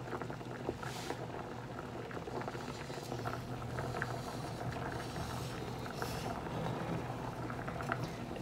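A large pot of water with mini potatoes at a rolling boil, with steady bubbling and many small pops.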